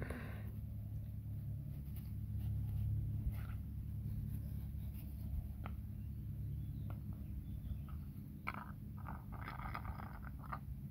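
A steady low background rumble with a few faint clicks; from about eight and a half seconds in, a run of scratching and rustling as fingers scrape in the grass to lure a kitten.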